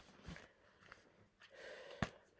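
Near silence: faint handling of a paperback booklet, with a soft knock early and a soft breath near the end.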